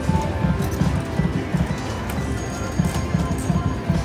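Prowling Panther video slot machine's game music playing while the reels spin, with a quick, steady drum-like beat of about four strokes a second.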